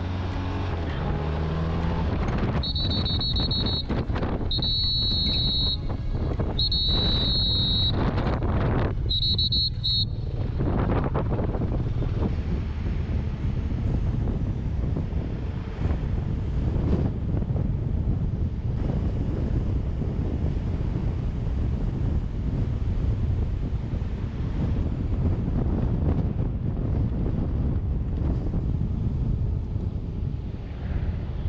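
Wind buffeting the microphone over the steady running of a police motorcycle riding at low speed. Early on a high electronic tone beeps four times, each about a second long and about two seconds apart.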